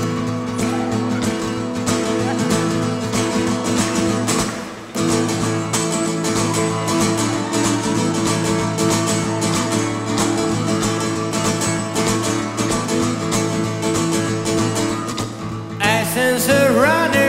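Acoustic guitar playing a rapid picked pattern of ringing notes as a song's instrumental intro. The playing eases off briefly about five seconds in, then picks up again.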